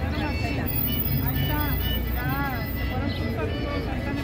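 Outdoor town-square ambience: a steady low rumble with faint voices and some faint music in the background.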